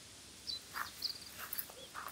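A few short animal calls outdoors, about half a second in and onward: high little chirps with brief lower calls among them.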